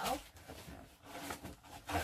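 Crinkling and rustling of clear plastic packaging being handled, with a few soft knocks.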